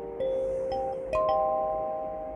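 Kalimba playing a slow melody, its plucked metal tines ringing on long after each note. Two main plucks of several notes together, about a fifth of a second in and just past the middle, with a few lighter single notes between.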